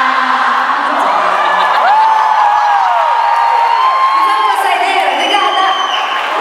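A large concert audience cheering, with many voices and long drawn-out high-pitched shrieks and whoops overlapping through the crowd noise.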